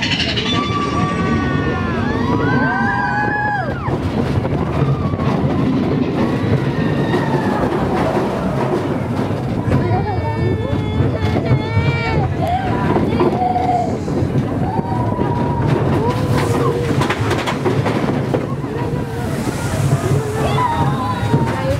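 Mine-train roller coaster cars running along their track with a steady low rumble, riders' voices calling and whooping over it through the ride.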